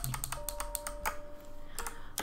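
Computer keyboard keys clicking in quick runs, over quiet piano background music holding long notes.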